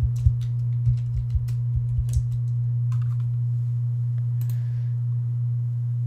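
Light tapping clicks, as in typing, about eight in the first two seconds, over a steady low hum that persists throughout.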